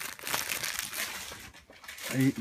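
Dog eating from its bowl on the floor: an irregular run of crackly crunching sounds that thins out near the end.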